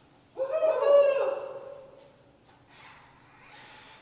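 A person's high-pitched whoop, starting about a third of a second in and fading over about a second and a half. Near the end comes a soft hiss from an automatic hand sanitizer dispenser.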